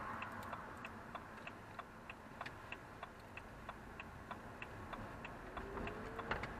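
Car turn-signal indicator ticking steadily, about three clicks a second, over low road and engine noise in the cabin. A faint tone rises in pitch near the end.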